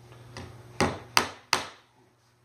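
Hammer driving trim nails into plywood: a light tap, then three sharp strikes about a third of a second apart, each ringing briefly.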